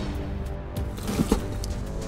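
Background music with a low steady rumble, and a brief soft impact a little over a second in: a cartoon landing effect as a small object drops into place.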